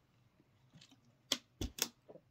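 Drinking from a plastic water bottle, then three sharp clicks and knocks of the plastic bottle as it is lowered, the second with a dull thump.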